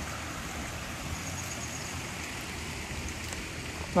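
A small shallow creek running over stones: a steady, even rush of water.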